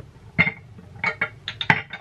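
A few short, light clicks and knocks: one about half a second in, then a quick cluster in the second half, the loudest near the end.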